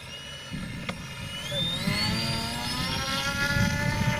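RC seaplane's pylon-mounted propeller motor throttling up for a takeoff run: a whine rising steadily in pitch from about a second in, then holding high near the end.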